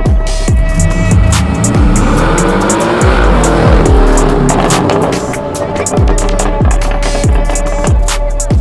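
Background music with a heavy, regular bass beat over a Porsche 718 Boxster's turbocharged 2.0-litre flat-four engine as the car drives past, its engine note swelling and shifting in pitch in the middle.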